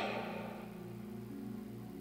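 Soft background music of held, sustained chords, the chord changing once about halfway through, with the hall's echo of the last spoken word dying away at the start.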